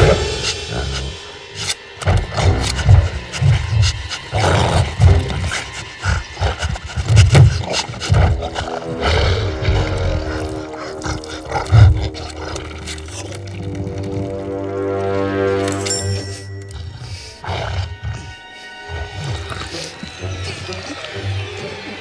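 Suspenseful orchestral film score with a monster's snarls and roars and a run of crashes and thumps through the first half, the loudest crash about twelve seconds in. After that the music settles into held, sustained chords.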